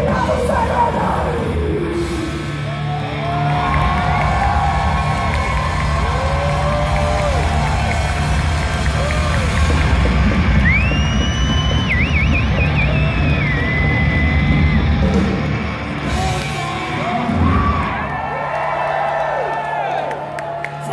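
Heavy metal crowd yelling and whooping over the band's amplified instruments, which hold a steady low drone. About halfway through, a high wavering tone is held for a few seconds.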